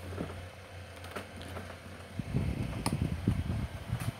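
Comfort Zone fan being handled, with a few sharp clicks, then running close by with a louder, uneven low rush from about two seconds in.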